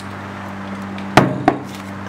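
A glass bowl set down on a stone countertop: two sharp knocks about a third of a second apart, over a low steady hum.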